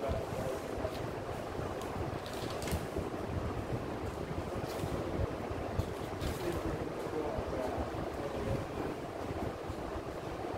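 A steady rushing noise, with a man's voice faint beneath it.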